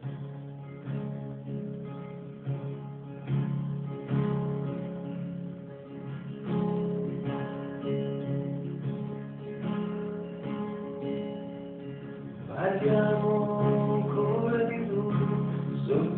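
Acoustic guitar playing a song's opening, chords sounded with a regular beat. About three-quarters of the way through, a voice starts singing over the guitar, and the music gets louder.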